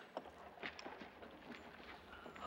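Faint, scattered metallic clinks and scuffs: spurs jingling and boots scraping on a wooden floor as a wounded man shifts his weight.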